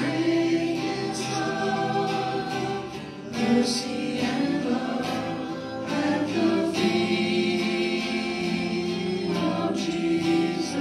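Live church worship song: voices singing a slow gospel-style melody over acoustic guitar and electric bass, with a short lull between phrases about three seconds in.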